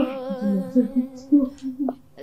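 A woman's voice humming a slow melody, likely the soundtrack song. A held note wavers in pitch, then breaks into shorter notes and trails off near the end.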